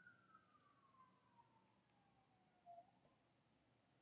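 Near silence with a faint siren wail: one tone that falls slowly in pitch and dies away about three seconds in.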